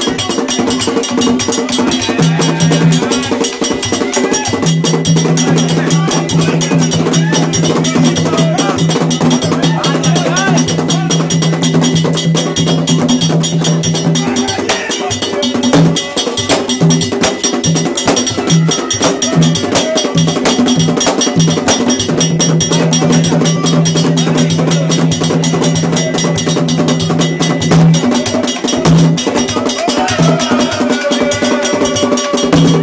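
Afro-Caribbean gagá drumming: hand drums and a drum struck with sticks play a fast, dense, steady rhythm with a bright ringing metallic beat on top. A low held note drops in and out, breaking into short blasts in the middle stretch.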